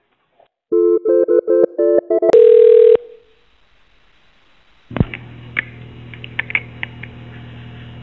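Touch-tone telephone dialing: a quick run of about ten keypad beeps, then a longer, louder tone. After a short pause a click as the line opens, followed by a steady low hum with a few faint clicks.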